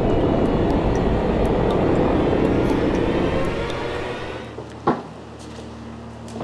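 Horror-soundtrack sound effect: a loud rumbling drone that fades away over about four seconds, followed by a single sharp hit near the end and then a faint low steady hum.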